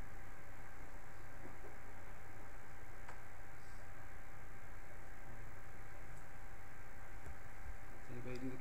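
Steady background hiss and low hum of room tone, with one faint click about three seconds in.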